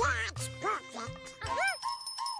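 Donald Duck's cartoon quacking voice letting out a string of short, excited squawks that each rise and fall in pitch, over light background music with a faint tinkle near the end.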